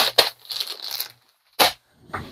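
Packaging handled at a desk: a quick run of crinkling, tearing strokes fading into rustling, then a single sharp knock about a second and a half in.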